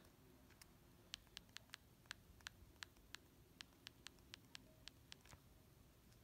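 Faint clicks of a cell phone's keypad buttons being pressed one after another while scrolling through its menus, about fifteen quick presses at an uneven pace, stopping about five seconds in.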